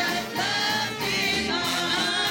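Gospel praise team singing together through microphones, several voices in harmony over a steady low accompaniment.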